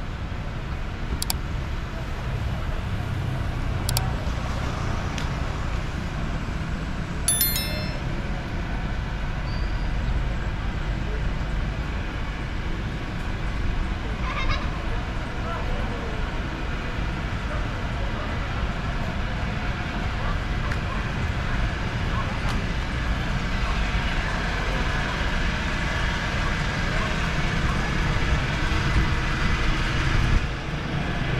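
Outdoor street ambience: a steady low rumble of road traffic under faint voices of people nearby. A brief high-pitched tone sounds about seven seconds in.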